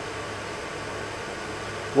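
Steady background hiss with a faint, even low hum; nothing else stands out.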